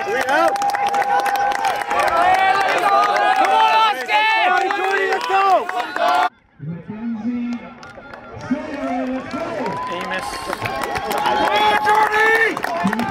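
Trackside spectators yelling and cheering runners on, with clapping mixed in. The sound cuts off abruptly about six seconds in, then lower voices shout encouragement and the cheering builds again near the end.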